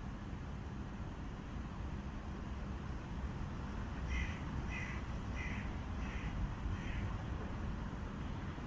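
A bird calls five times in a quick, even series starting about halfway through, over a steady low rumble of passing city traffic.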